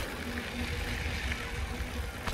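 Mountain bike rolling along a dirt trail: a steady low rumble from the tyres and wind on the microphone, with a faint steady hum.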